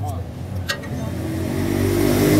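A vehicle engine running steadily nearby and growing louder toward the end, with a single short click a little after half a second in.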